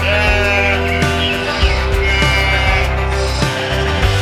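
Background music with a sheep bleating sound effect laid over it: one wavering call across roughly the first half.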